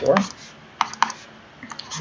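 A stylus tapping on a tablet while handwriting, with a few sharp clicks about a second in and fainter ones near the end.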